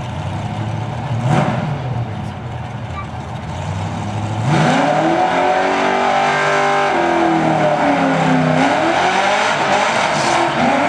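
Mustang drag car's engine idling with a short rev about a second in, then revving hard about halfway through into a burnout. The engine is held at high revs, its pitch sagging and recovering twice as the rear tyres spin and smoke.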